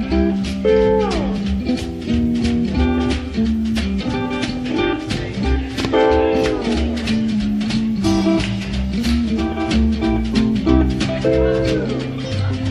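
A small band playing instrumental jazz: an electric steel guitar slides its notes down in long glides about a second in, at six seconds and near the end, over a steady beat from guitar, electric soprano ukulele, washtub bass and drums.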